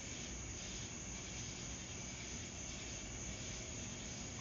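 Faint night-time chorus of insects, a soft high hiss, over a low steady background rumble.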